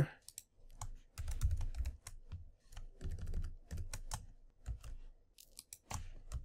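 Typing on a computer keyboard: irregular runs of keystroke clicks with short pauses between them.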